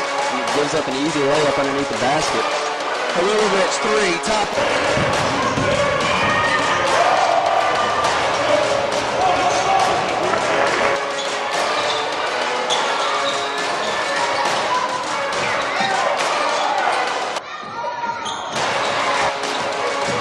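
Live basketball game sound in a gym: the ball bouncing on the hardwood floor, over a steady hubbub of crowd and player voices. The sound drops out briefly and changes about three-quarters of the way through, at a cut between game clips.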